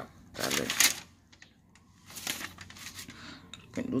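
Two short bursts of rustling handling noise about two seconds apart, near quiet between them; a man's voice starts at the very end.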